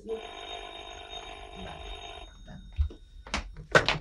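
Telephone ringing: one steady ring lasting about two seconds, then it stops. A few short clicks come near the end.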